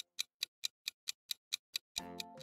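Clock-tick sound effect of a quiz countdown timer: a steady run of sharp, evenly spaced ticks, about four to five a second.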